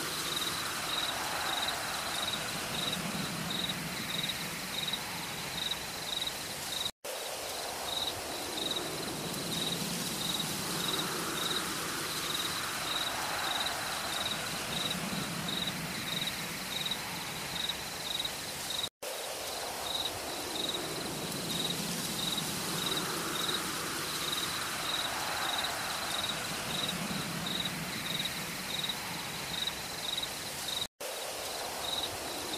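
Night insects chirping in a steady, high pulse about twice a second, with softer low calls recurring every couple of seconds underneath. The sound cuts out for a split second twice, about twelve seconds apart, as if a looped ambience track restarts.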